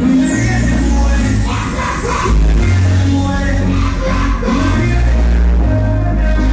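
Loud music playing over a party sound system, with a heavy bass line of long held notes that change about once a second.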